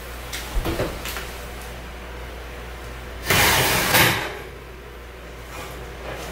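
Oven being opened: a few light knocks from the oven door about half a second to a second in, then a loud scrape just under a second long as the metal oven rack slides out, over a steady low hum.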